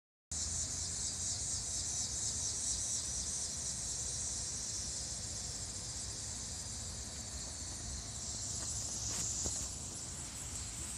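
A steady, high-pitched chorus of insects trilling, with a low rumble underneath.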